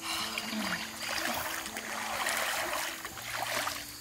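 Creek water splashing and sloshing as a person sits in it and sweeps her arms through the surface, dying away near the end.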